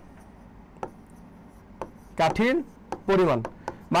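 A pen tapping against a writing board as it writes: a few small, sharp taps, one about a second in, another near two seconds and one near the end.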